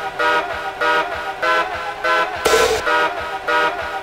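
Happy hardcore breakdown: a chopped synth riff of short, bright chord stabs, about four a second, with the kick drum and bass dropped out.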